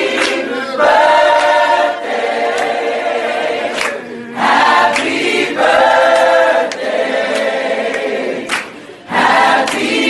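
Background music: a choir singing in held chords, phrase after phrase, with short breaks between phrases about four seconds in and again near nine seconds.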